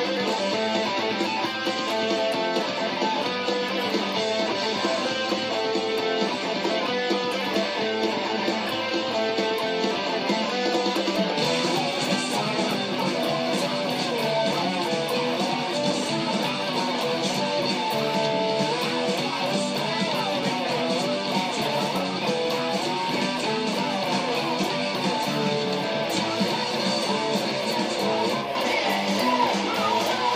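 Overdriven electric guitar, a Gibson Les Paul Traditional through a Marshall SL-5 amp and Fulltone OCD overdrive pedal, playing a fast heavy-metal part with steady picking. The sound grows fuller and brighter about eleven seconds in.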